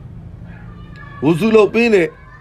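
A man's voice: a short drawn-out phrase with rising and falling pitch in the second half, after a second of low background sound.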